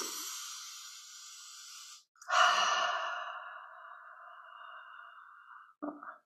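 A woman breathing deeply through hands cupped over her nose and mouth, taking in the scent of an oil rubbed on her palms: a long breath of about two seconds, then a louder sighing breath that fades away over about three seconds.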